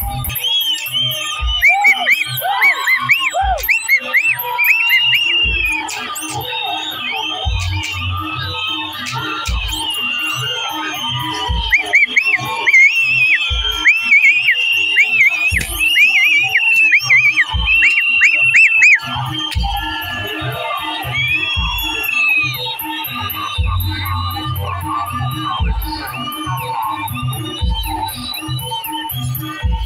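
Bantengan procession music with irregular deep drum beats. Over it come many shrill whistles sliding up and down in quick arcs, thickest through the first two-thirds, and a crowd can be heard around them.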